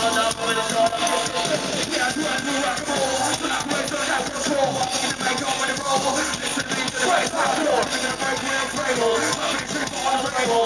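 Live band music over a PA, with electric guitar and a rapper's vocals through a handheld microphone, recorded from the audience.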